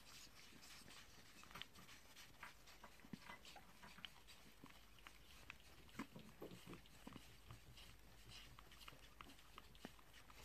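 Faint, wet chewing and smacking of a flying fox eating chopped fruit from a bowl, with scattered small clicks and a slightly fuller run of munching about six seconds in.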